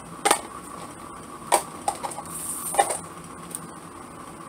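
Craft materials handled on a work table: about four short, light clicks and taps, spaced irregularly, over a faint steady hum.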